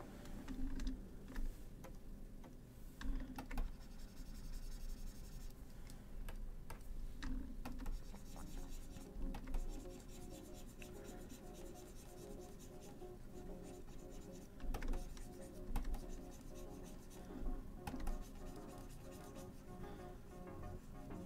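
Pen stylus scratching and tapping on a graphics tablet during digital painting, with scattered sharp clicks, over quiet background music.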